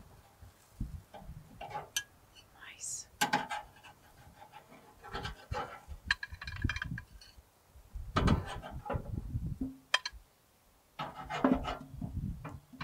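Metal spatula scraping and clinking on a gas grill's grate as grilled trout fillets are lifted off onto a plate: scattered irregular clicks and knocks, with a few louder scrapes a little after three seconds and around eight seconds.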